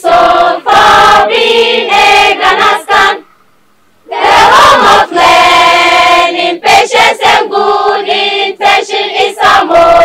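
A mixed choir of secondary-school students singing their school song, with a short pause about three seconds in before they start again.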